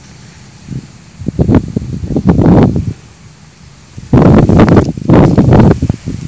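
Ripe rice plants rustling and brushing close against the phone's microphone as the stalks are pushed aside, in two loud spells of a couple of seconds each.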